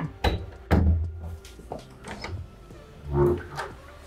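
Wooden interior door with a lever handle being worked: a latch click, then a soft thud near one second, light clicks, and another dull thud about three seconds in.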